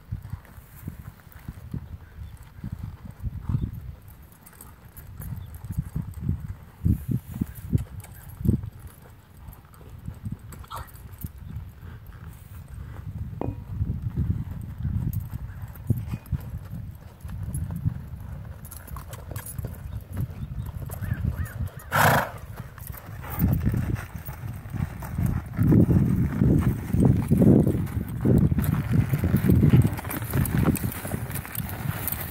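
Hooves of a ridden horse thudding on arena dirt in an uneven run of soft beats. There is one short, sharp noisy burst about two-thirds of the way through, and the sound grows louder near the end as the horse comes close.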